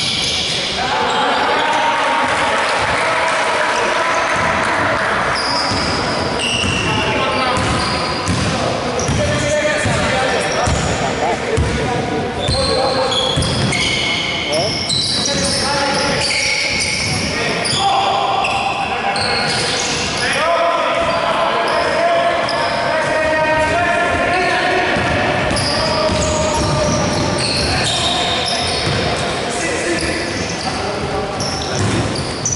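Basketball bouncing on a hardwood court, with players' feet on the floor and players calling out to each other, in a large gymnasium hall.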